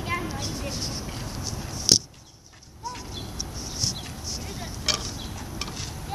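Steady outdoor background noise with scattered faint, short high chirps and a few sharp clicks. About two seconds in, a click is followed by the sound going almost dead for under a second before the background returns.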